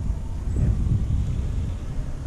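Wind buffeting the camera microphone: an uneven low rumble that rises and falls.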